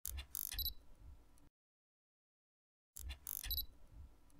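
Electronic intro sound effect for a glitching channel logo: a short crackle of clicks with a brief high beep that trails off and cuts to dead silence, then the same burst again about three seconds in.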